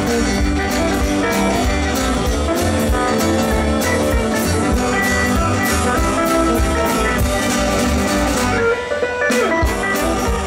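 Live rockabilly band playing an instrumental passage without vocals: guitar to the fore over upright double bass and a drum kit keeping a steady beat.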